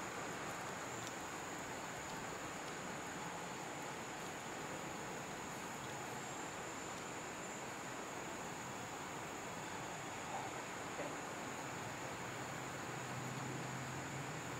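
Steady outdoor background hiss with a constant high-pitched insect drone, as from crickets or cicadas in the trees.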